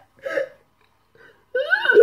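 Short hiccup-like laughing sounds: a brief burst about a third of a second in, then a high voice that rises and falls near the end.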